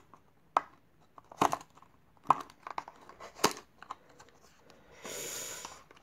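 Small cardboard knife box being opened by hand: scattered sharp crackles and snaps of the card and its flap, then about a second of steady scraping rustle near the end as the inner packaging starts to slide out.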